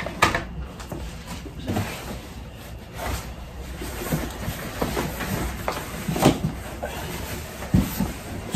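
Cardboard shipping boxes being picked up, turned and set down: scattered knocks, scrapes and rustles. The loudest knocks come a little after six seconds and just before the end.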